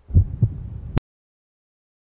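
Heartbeat sound effect: one low double thump, lub-dub, that cuts off abruptly with a click about a second in.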